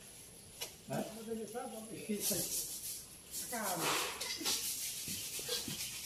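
People talking faintly in short remarks, including a questioning "hah?", with a soft hiss in the middle.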